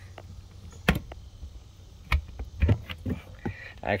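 Latch of a boat's deck locker hatch clicking open with one sharp click, followed by a few softer knocks as the lid is lifted.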